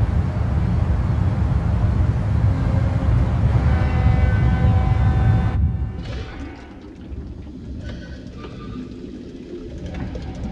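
Film soundtrack: a loud low rumble, joined about three and a half seconds in by a chord of held tones, cuts off abruptly a little past halfway. Quieter, scattered sounds follow.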